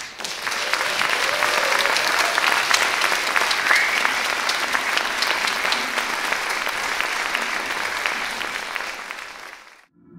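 Audience applauding at the end of a piece, a dense sustained clapping that fades away near the end.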